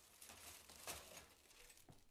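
Near silence: room tone with faint rustling and a soft tick about a second in.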